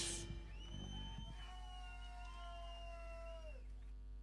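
Loud band music cuts off; then a faint held pitched tone with overtones rings for about three seconds, wavering slightly and bending downward as it stops, over a steady low amplifier hum.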